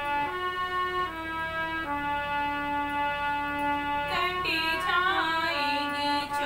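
Harmonium playing a slow melody of held reed notes. A woman's voice joins about four seconds in, singing a Hindi bhajan over it.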